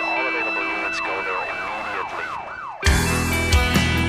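A siren in a fast, repeated rise-and-fall yelp over held tones, as a sampled intro to a song. About three seconds in, the band crashes in suddenly with electric guitar and regular drum hits.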